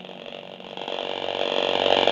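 Computer audio playback of a video breaking up into a loud, harsh crackling distortion that grows louder toward the end. It is the glitch caused by Premiere Pro's audio I/O buffer size being set to 16 instead of 512.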